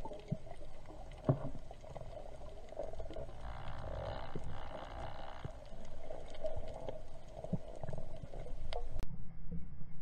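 Underwater sound heard through a camera housing: a muffled low rumble with scattered clicks and ticks and a couple of sharp knocks in the first second and a half. About nine seconds in the sound turns duller and a low pulse about twice a second begins.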